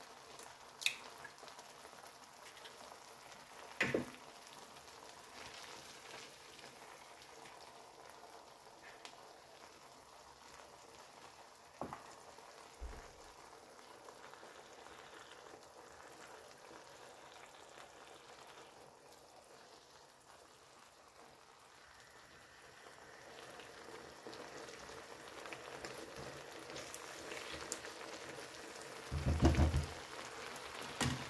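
Tomato-and-potato sauce with eggs simmering in a tagine over a gas burner: a faint steady sizzle and bubbling that grows a little louder in the last several seconds. A few light knocks sound along the way, and a louder thump comes just before the end.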